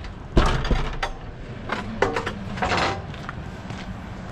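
A metal-framed glass entrance door knocking and clunking shut, with a second knock just after, then a brief rustle.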